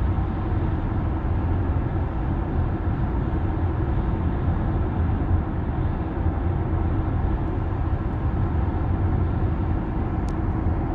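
Steady road noise inside a Tesla's cabin at about 60 mph on a highway: a constant low tyre rumble with wind noise, and no engine sound from the electric drive.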